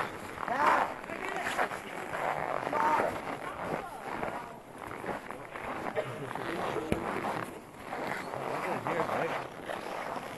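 Indistinct voices of several people talking, with no clear words, over a rough background rustle.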